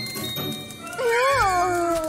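A brief sparkle chime, then about a second in a cartoon character's long wordless whine that rises a little and slides down in pitch, over light background music.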